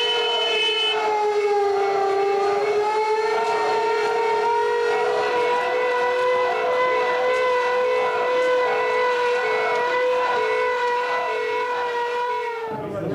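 A siren sounding one long, steady tone, its pitch dipping slightly about two seconds in and then holding level.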